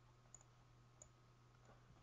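Near silence with two faint computer mouse clicks, about a third of a second and a second in, over a faint steady low hum.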